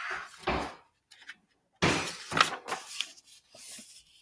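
Paper rustling as the pages of a picture book are turned and handled. It comes in two bursts: a short one at the start and a longer one about two seconds in.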